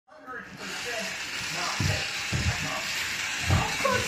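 Voices talking over a steady high whir from the small battery motor of a Magic Tracks toy race car, with three low thumps.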